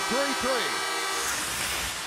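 An arena goal horn sounds its steady, chord-like tone after a goal and cuts off about a second in. Crowd noise carries on underneath it.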